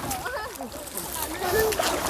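Water splashing and sloshing as a fine-mesh hand net is hauled through and lifted out of a shallow pond by someone wading; a faint voice talks underneath.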